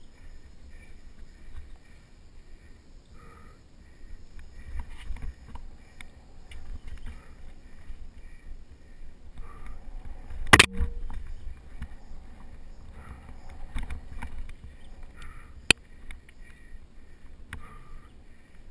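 Mountain bike riding over a dirt singletrack, picked up by a bike-mounted GoPro Hero2: a steady low rumble with small rattles and clicks from the bike. There are two sharp knocks, the louder one a little past halfway and a shorter one about three-quarters of the way through.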